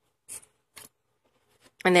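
Two brief, hissy rustles about half a second apart: a stiff paper card being moved against a clear plastic sheet protector.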